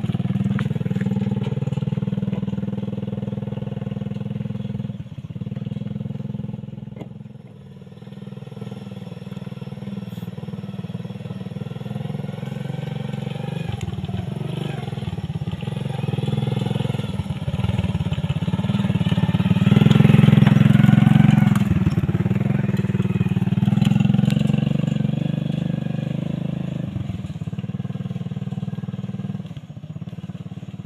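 Small motorcycle engine towing a cart trailer with passengers, running steadily in a low drone. It grows louder as it nears, is loudest about two-thirds of the way through as it passes close, then fades as it moves off.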